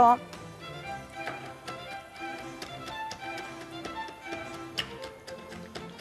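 Soft background music with a melody, over repeated light taps of a wooden pestle crushing hazelnuts in a small mortar.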